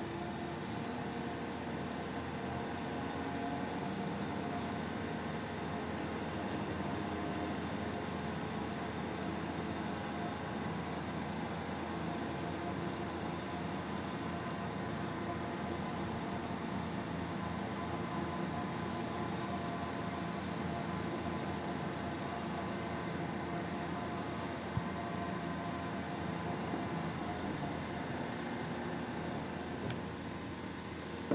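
Mobile crane's diesel engine running steadily under load while it hoists a large water tank: a continuous mechanical drone with a faint whine above it. One short knock near the end.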